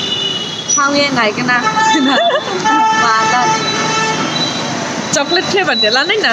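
Women's voices with chatter and exclamations, and a vehicle horn held steadily for about two seconds in the middle.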